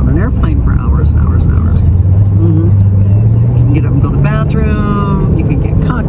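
Low engine and road rumble inside a moving car, rising in pitch over the first few seconds as the car speeds up, with a woman's voice talking over it.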